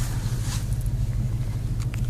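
2013 Ford Mustang Boss 302's 5.0-litre V8 idling steadily, heard from inside the cabin as a low, even hum.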